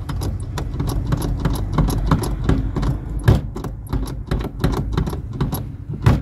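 Hand work on a van's clutch pedal assembly under the dashboard: a busy run of small metallic clicks and rattles over a steady low hum.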